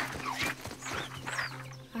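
Short, high bird-like chirps and a few light taps over a steady low hum.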